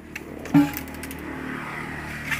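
A blade striking bamboo once about half a second in: a sharp knock with a brief ringing tone, as bamboo is being split.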